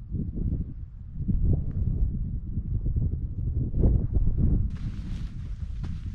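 Wind buffeting a camera microphone as an uneven low rumble, with a lighter hiss joining near the end.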